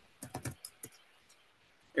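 Computer keyboard typing: a quick run of about half a dozen keystrokes in the first second, then stopping.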